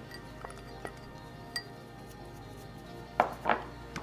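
Quiet background music with a few light clinks and knocks from a glass mixing bowl and kitchenware as diced red onion goes into it. Two louder knocks come near the end.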